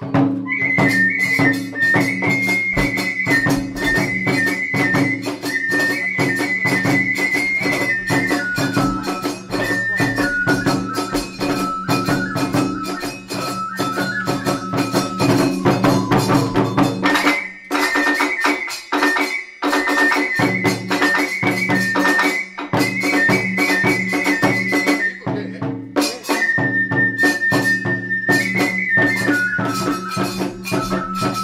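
Iwami kagura hayashi in the fast hatchōshi style: a bamboo flute plays a high melody over rapid hand-cymbal and drum beats. The ensemble starts right at the beginning, and the low drum drops out briefly about two-thirds of the way through before resuming.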